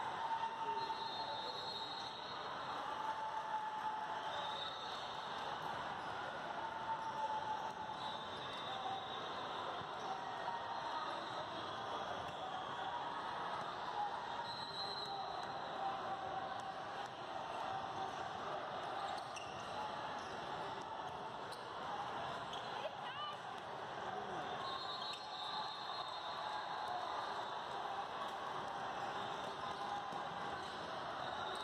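Basketballs bouncing on a hard sport-court floor amid the steady echoing chatter of many people in a large hall where several games are being played at once.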